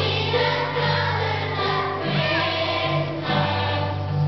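Children's choir singing a Christmas song together over a steady low instrumental accompaniment.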